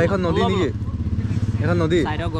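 An engine running steadily with a low, even throb under a man's talking; the talk breaks off for about a second in the middle, leaving the engine alone.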